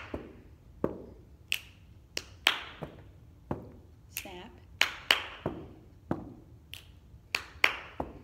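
Body percussion played slowly in a repeating snap, clap, clap, stomp, stomp pattern: sharp finger snaps and hand claps alternating with duller sneaker stomps on a carpeted floor, a strike every half second or so.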